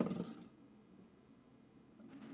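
A disk launched with spin rumbling as it rolls and slides across a tabletop, fading out within the first half second, then near silence.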